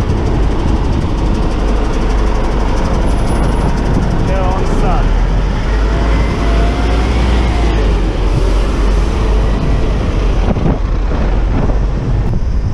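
Steady city traffic heard from a moving bicycle: a constant low rumble with buses and cars running close alongside.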